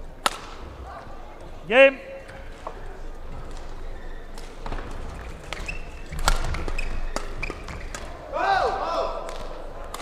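Sports-hall sounds at the end of a badminton rally: a sharp smack just after the start, a loud short rising cry or squeak about two seconds in, a few scattered knocks, and a cluster of court-shoe squeaks on the hall floor near the end.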